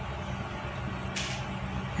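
A steady low background hum, with a short hiss a little over a second in.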